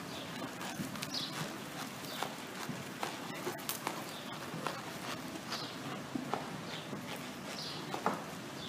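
A ridden horse's hoofbeats on the soft dirt footing of an indoor arena at a slow gait, an irregular series of dull knocks.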